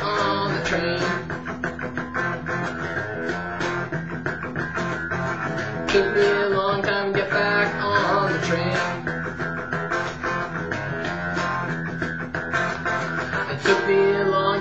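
Fender Stratocaster electric guitar played as a rock-blues rhythm part, with frequent sharp strummed attacks.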